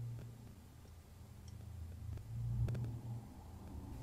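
Faint clicks of small metal parts being handled as an AR-15 safety selector lever is fitted onto the lower receiver, a few of them about two and a half seconds in, over a low steady hum.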